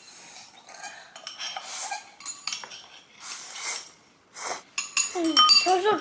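Chopsticks and utensils clinking against ceramic bowls and a plastic tray while people eat noodles, in scattered short clicks and rustles. About five seconds in, a high voice begins speaking.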